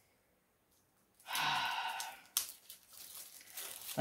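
A short, loud vocal sigh about a second in, followed by the crinkling and rustling of a small clear plastic bag of diamond painting drills being handled, with scattered clicks.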